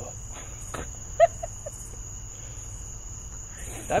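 A pause in conversation filled by a steady high-pitched whine and a low hum in the recording's background, with a brief short vocal sound about a second in. Speech resumes at the very end.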